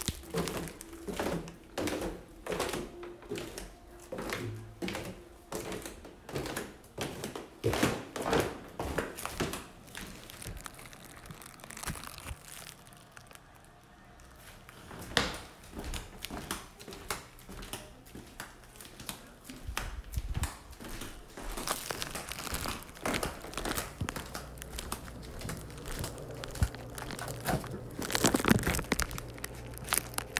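Footsteps going down wooden stairs and along a hallway floor, mixed with rustling and knocks from a hand-held phone being carried. The knocks and rustles come irregularly, about one or two a second, with a quieter stretch about halfway through.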